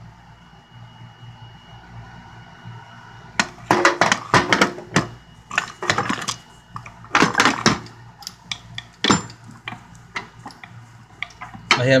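Metal hand tools clinking and clattering against each other and the steel toolbox drawer as they are handled and shifted. The drawer is fairly quiet at first, then gives a run of sharp, irregular knocks and clinks from about three seconds in.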